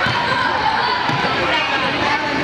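Basketball dribbled on a gym's hardwood floor, the bounces heard under the chatter and calls of players and spectators in the hall.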